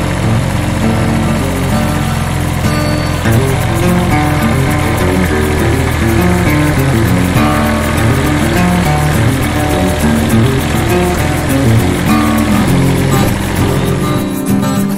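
Background music with a melody of stepped notes, laid over the steady running of a compact tractor's engine as it works filling a trench.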